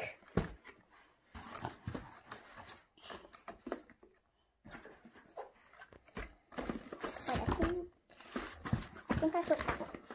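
Cardboard toy-train boxes being lifted, slid and shuffled in a cardboard shipping carton with crumpled newspaper packing: irregular rustling and light knocks of cardboard against cardboard.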